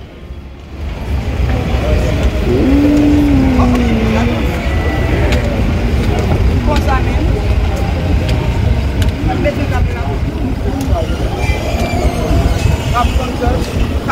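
A steady low rumble, with voices speaking faintly over it; one voice holds a long, drawn-out sound about three seconds in.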